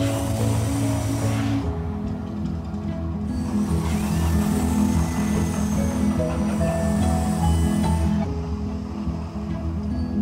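Music with steady pitched tones, over the gas-fired flame jets of a man-made volcano attraction going off with a hissing rush: once for the first second and a half, and again for a longer stretch from about three to eight seconds in.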